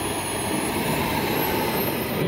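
Miniature turbine engine of a scale model jet running steadily: a loud even rush with a thin high whine above it that rises slightly near the end.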